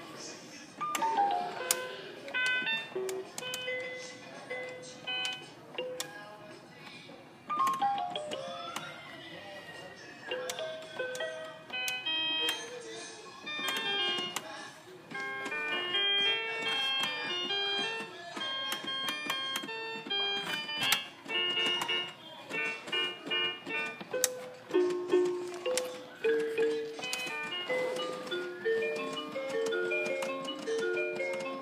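Toy electronic keyboard played by hand: quick melodic runs, falling glissando-like sweeps and busy clusters of bright, bell-like synthesized notes, with short pauses between phrases.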